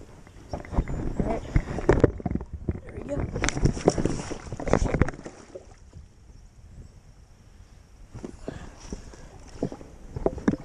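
A person slipping and falling on loose rip-rap rocks at the water's edge: a quick scramble of knocks and scrapes against stone, loudest in the first half, then a few more knocks near the end as he gets his footing.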